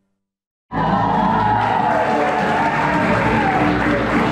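Silence for a moment, then a group of strolling acoustic guitarists cuts in loudly mid-song, strumming and singing together.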